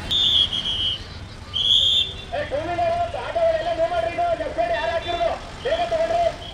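Two shrill whistle blasts, then a voice calling out in long drawn-out notes, over steady outdoor crowd and vehicle noise.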